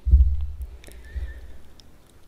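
Low rumble of camera handling noise as the camera is shifted, loudest at the start and fading over about a second and a half, with a few faint clicks.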